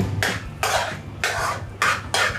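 A utensil scraping creamy pasta out of an aluminium frying pan onto a plate: four short scrapes, about half a second apart.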